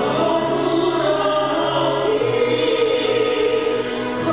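Large mixed choir singing slow, long-held chords, the harmony moving to new notes a couple of times.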